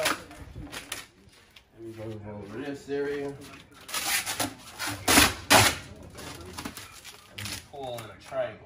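Vinyl wrap film being lifted and stretched across a car hood by hand, with three short, loud rasps of the film about four to five and a half seconds in. A brief mumbled voice comes before them.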